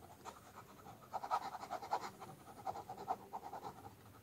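Ballpoint pen scratching across sketchbook paper in quick back-and-forth hatching strokes. The strokes are sparse at first and come in fast runs from about a second in.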